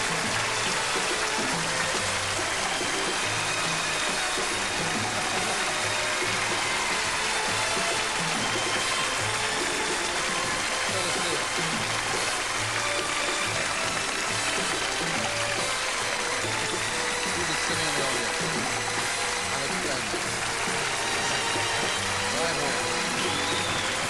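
Large theatre audience applauding steadily, with music playing over it.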